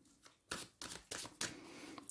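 A deck of tarot cards being handled by hand: a few soft, quick card flicks and rustles, starting about half a second in.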